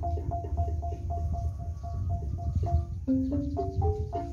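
Gambang, a wooden xylophone, played in a quick repeating pattern of short struck notes, about four a second. About three seconds in the pattern changes to lower, longer-held notes as a bamboo flute comes in.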